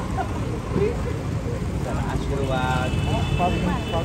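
Scattered voices of people nearby over a steady low rumble. In the last second and a half a high, steady ringing tone comes in.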